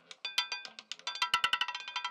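Roulette ball clattering across the wheel's metal pocket frets as it drops and settles: a run of sharp clicks that speeds up, each with a brief metallic ring.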